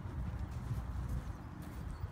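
Hoofbeats of a horse cantering on a sand arena surface.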